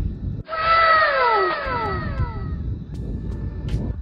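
An edited-in sound effect: a pitched tone that starts suddenly about half a second in and slides down in pitch over about two seconds, with trailing echoing copies, over the low steady rumble of the motorcycle on the road.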